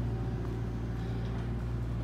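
Bobcat excavator's engine idling off-camera, a steady low hum.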